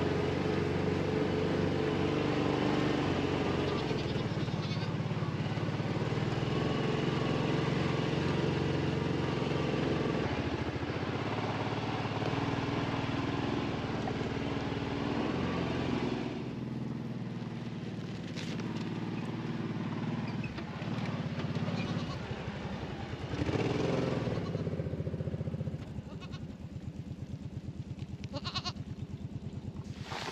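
A utility vehicle's engine runs steadily at low speed while a herd of Kiko goats bleats. About halfway through, the engine sound drops back and the goats' bleats stand out.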